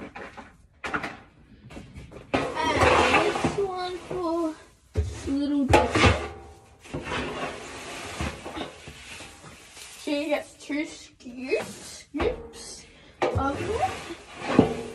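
Indistinct talking, with a few knocks and clunks of feed containers and their lids being handled; the loudest knocks come about five to six seconds in.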